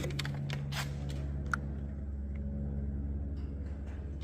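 Steady low hum with a few faint light clicks in the first second and a half.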